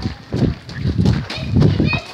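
Children laughing in loud, breathy bursts that come about every half second.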